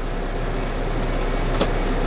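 The 2005 Mack Granite's diesel engine idling steadily, heard from inside the cab, with a single short click about one and a half seconds in.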